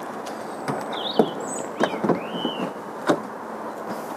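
CCS2 rapid-charging connector being pushed into a car's charge inlet: several sharp knocks and clicks of the plug seating in the socket, over a steady background noise. A few short high chirps come about a second in and again around two seconds in.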